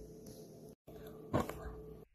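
A short, sharp puff of breath blowing out a small candle about a second and a half in, over a faint steady hum. The sound cuts out for an instant just before it.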